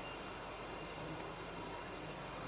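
Quiet, steady background hiss with no distinct sound: outdoor room tone and microphone noise in a pause between spoken prayer lines.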